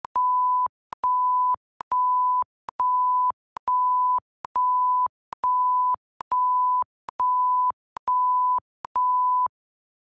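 Filmora 9's "Beep" censor sound effect played eleven times in a row, about once a second: each is a steady high pure tone about half a second long, with a sharp click where each one starts and stops. The even string of beeps sounds like an alarm trying to wake you up.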